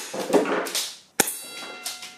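Airsoft pistol handled and fired: a click, then a rustling stretch, then a sharp snap about a second in followed by a short metallic ring.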